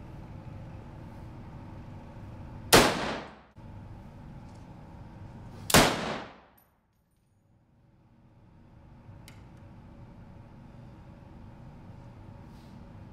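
Two rifle shots about three seconds apart, each a sharp crack followed by a short echo off the walls of the indoor range.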